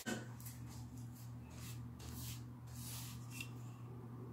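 Faint soft swishes of a paintbrush stroking over a painted wooden bed-frame panel, about two a second, over a steady low hum.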